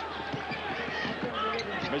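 A basketball being dribbled on a hardwood court, several bounces, with voices and arena background noise behind.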